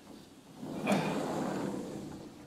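A house window being pushed open: a sharp click about a second in, then about a second of the frame scraping as it moves.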